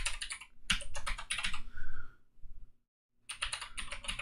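Typing on a computer keyboard: a run of quick key clicks that breaks off for about a second past the middle, then picks up again.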